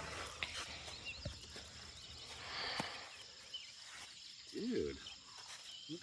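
A faint, steady high insect drone, with a few soft clicks and knocks from handling and a short hummed voice sound about three-quarters of the way through.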